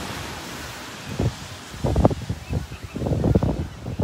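Footsteps in dry, soft beach sand, a run of soft low crunches at walking pace starting about a second in, over a steady hiss of surf and wind on the microphone.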